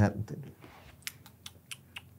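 Laptop keyboard typing: about half a dozen quick keystrokes in the second half.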